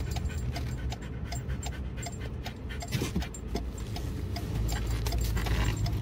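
A dog panting rapidly and steadily inside a moving car, over the low hum of the engine and road noise, which grows louder about four and a half seconds in as the car speeds up.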